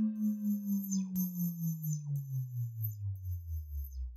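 A low electronic synthesizer tone, the tail of the intro music, sliding slowly down in pitch with a steady pulsing wobble about five times a second. Faint high sweeping tones sound above it.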